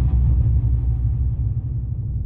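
A deep, low rumbling drone from the podcast's sound design, slowly fading.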